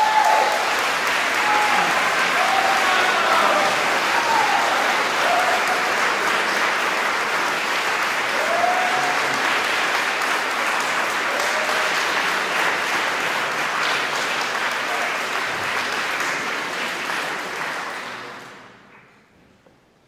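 Audience applause, steady and loud, that dies away about eighteen seconds in. A few short calls from voices rise over it, mostly in the first few seconds.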